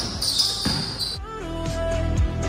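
A basketball being dribbled on a hard court, with high squeaking over it. About a second in, music with a steady beat comes in and carries on under the bounces.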